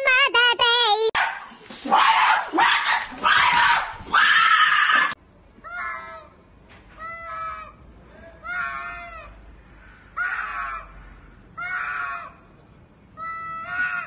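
Two domestic cats yowling at each other in a standoff: loud cries in the first few seconds, then a run of drawn-out, wavering yowls, one about every second and a half.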